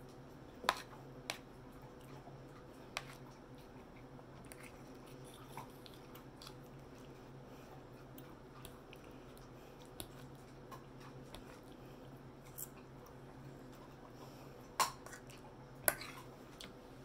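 Close-up eating sounds: chewing of fried pork chop with a few sharp clicks of a fork against the plate, the loudest less than a second in and twice near the end, over a steady low hum.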